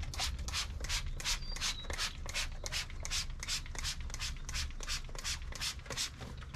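Hand trigger spray bottle pumped rapidly, about four quick hisses a second, misting hot peanut oil onto the inside of an offset smoker's cook chamber to season it.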